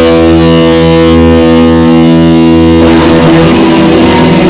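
Black metal recording: distorted electric guitar holding one sustained chord with the drums dropped out, then a new guitar passage starts a little under three seconds in.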